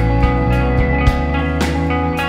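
Live rock band playing: electric guitars held over a loud electric bass line, with drum hits marking the beat.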